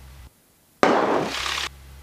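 Cessna 172 intercom audio feed: a faint engine hum cuts out to near silence, then a loud burst of static hiss opens for about a second and closes again.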